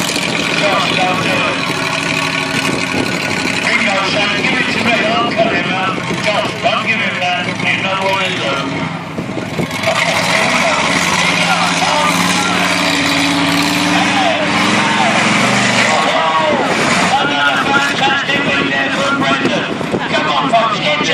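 Monster truck engine running as the truck drives across the grass arena, with a steadier low drone for a few seconds in the middle, under people talking.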